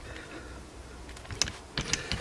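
Faint clicks and taps of metal as a rear brake caliper and its piston wind-back tool are handled, with two sharper clicks in the second half.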